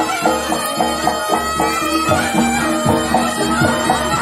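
Reog gamelan playing live: a reedy slompret shawm winds an ornamented melody over a steady beat of drums and gong-chimes.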